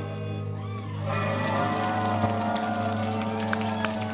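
Electric guitar and bass amplifiers left ringing after a punk song, holding a steady low hum and sustained notes with some gliding tones, while the audience cheers.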